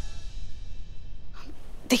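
The tail of a short background music sting fading out, then a sharp breath just before a woman starts to speak.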